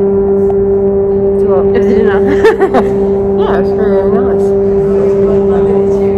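Loud, steady low-pitched hum of metro station machinery, holding one unchanging pitch with its overtones throughout, with brief voices over it around the middle.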